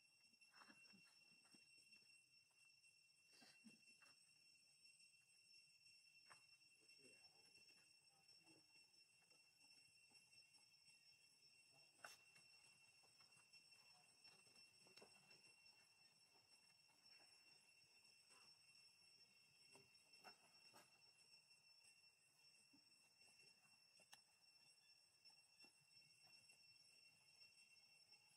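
Near silence: a faint steady high-pitched hum of several even tones, with a few scattered faint clicks.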